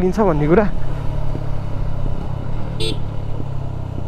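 Motorcycle engine running steadily at low road speed, a low even hum. There is a brief high-pitched chirp about three seconds in.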